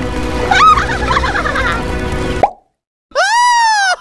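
Cartoon bubble-plop sound effects over background music, the bubbling sounds bending up and down in pitch. Everything cuts off suddenly about two and a half seconds in, and after a brief silence a high-pitched cartoon voice starts a long, drawn-out call.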